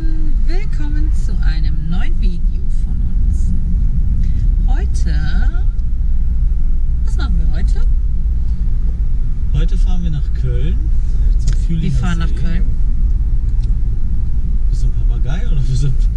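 Steady low road and engine rumble inside a moving car's cabin, with the sunroof open, under voices talking and laughing.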